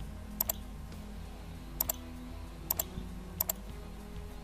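Computer mouse button clicks, four quick double clicks spread over the few seconds, over a faint steady low hum.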